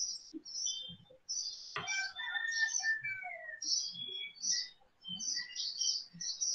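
Birds chirping in the background: a string of short, high chirps with a few brief whistled notes, some falling in pitch.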